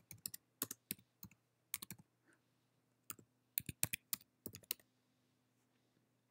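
Computer keyboard typing: faint, sharp keystrokes in two short runs, with a pause of about a second between them.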